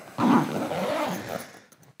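Zip on the front pocket of a nylon Brevitē 'The Rucksack' camera backpack being pulled closed. It makes a rasping, buzzing pull of about a second that tails off.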